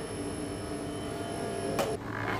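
Steady machine hum with several held tones, and a single sharp click near the end.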